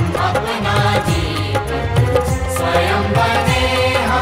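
Music: a Hindi song, sung over instrumental accompaniment with a steady beat.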